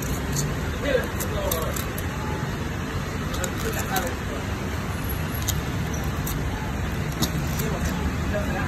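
Steady street traffic rumble with faint background voices and a few faint clicks scattered through it.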